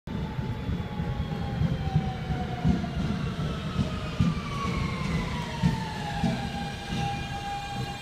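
An R160B Siemens subway train pulls into the station and slows, its propulsion giving a whine that slowly falls in pitch and levels off near the end. Under it is a heavy rumble from the wheels on the track, with irregular knocks.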